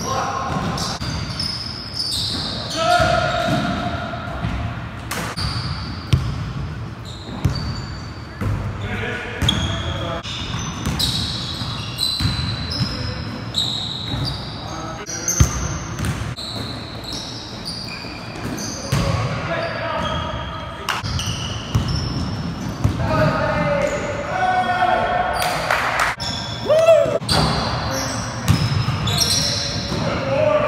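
Pickup basketball on a hardwood gym floor: a basketball bouncing in repeated sharp thuds, with sneakers squeaking and players calling out, all echoing in the large gym.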